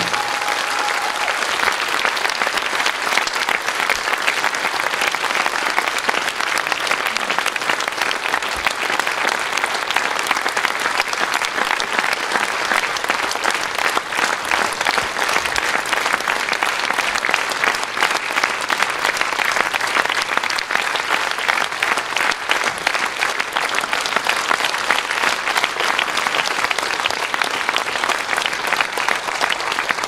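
Audience applauding steadily, dense clapping throughout; the last notes of the preceding music die away about a second in.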